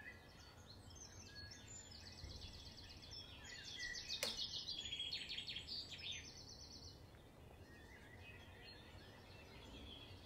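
Songbirds chirping faintly in the open air, with a fast, rapidly repeated trilling song in the middle lasting a couple of seconds. A single sharp click about four seconds in, over a low steady background rumble.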